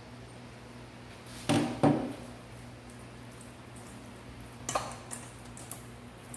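Hands working seasoning into raw fish pieces in a stainless steel bowl: wet handling sounds, with two louder knocks about a second and a half and two seconds in and a few smaller ones near the end, over a low steady hum.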